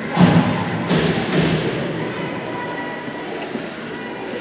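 Reverberant ice-rink game sound: a loud knock just after the start and a lighter one about a second in, with spectators' voices calling out over a faint steady hum.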